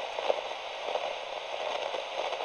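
Radio static from a ham radio receiver: a steady, thin hiss with scattered crackles.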